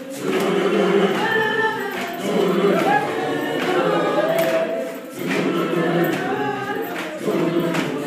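A group of children singing together in chorus, phrase after phrase, with a brief dip about five seconds in.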